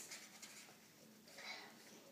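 Near silence with a faint rustle of a picture book's stiff page being handled and turned, clearest about one and a half seconds in.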